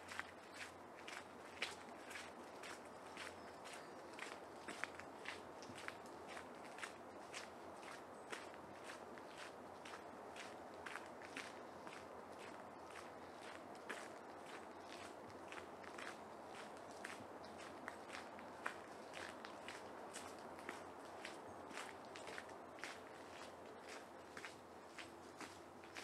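Footsteps of a person walking at an even pace on a path strewn with fallen leaves, about two steps a second, each a short crunch, over a faint steady background hiss.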